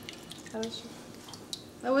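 Faint drips and squishes of water as a freshly shaped mozzarella ball is handled in a bowl of cold water, a few small separate ticks.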